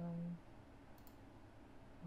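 A single computer mouse click about halfway through, over quiet room tone.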